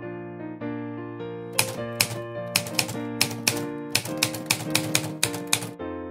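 Typewriter keys clacking in a quick run of about twenty strokes, starting about a second and a half in and stopping just before the end, over soft piano music.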